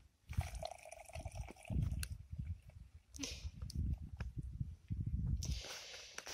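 Liquid spray solution pouring and dripping into a plastic knapsack sprayer tank through its mesh strainer, with a few light knocks of handling.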